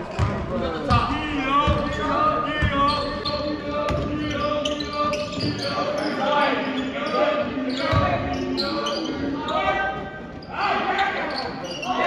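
Basketball bouncing on a hardwood gym floor, a run of dull thuds under a second apart in the first few seconds and a few more later. Indistinct voices of players and spectators echo in the gym throughout.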